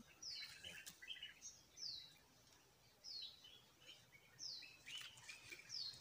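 Faint bird calls: a short high note falling in pitch, repeated about once a second, with softer chirps in between.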